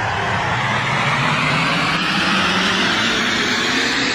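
A whoosh of noise swelling slowly and steadily, a cinematic riser in an edited soundtrack.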